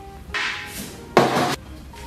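A large slotted metal ladle scooping blanched beef hooves out of a pot of boiling water, with two short splashing noises: a softer one about a third of a second in and a louder, abrupt one a little past the middle. Faint background music.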